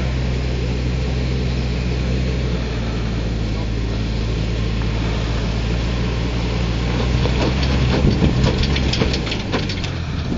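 A Hummer's engine runs at low, steady revs as the truck crawls up a rocky trail. From about seven seconds in, a run of sharp clicks and knocks joins it.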